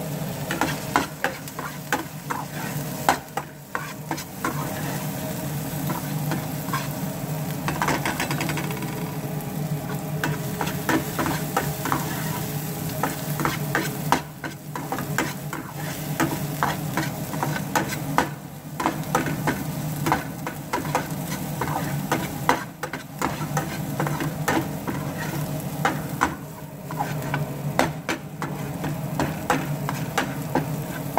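Minced garlic sizzling in butter and oil in a stainless steel pan, stirred with a metal spatula that scrapes and clicks against the pan many times.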